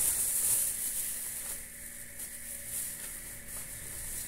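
Thin clear plastic bag rustling and crinkling as it is handled, loudest in the first second and lighter after.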